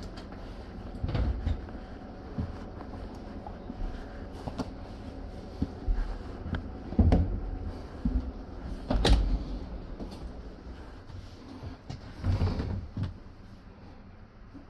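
Irregular knocks and thumps inside a passenger railway carriage, the loudest about seven and nine seconds in, over a steady low hum.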